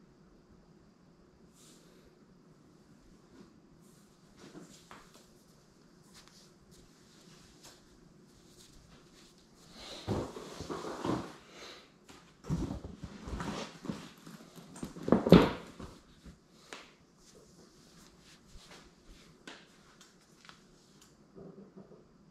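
Handling noise from camera equipment and cases: irregular knocks, clicks and rustles, busiest in the middle stretch, with one loudest thump about fifteen seconds in.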